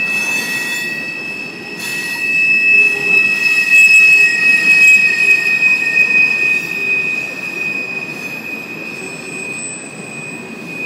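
Freight train tank cars rolling past, their steel wheels squealing against the rails in one steady high-pitched squeal over the rumble of the cars. The squeal is loudest about three to six seconds in.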